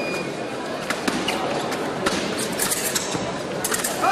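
Foil fencing in action: footwork tapping and stamping on the piste and the blades clinking together, with a burst of sharp clicks about halfway through and another just before the end.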